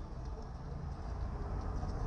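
Low, steady background rumble inside a car's cabin, with no distinct event.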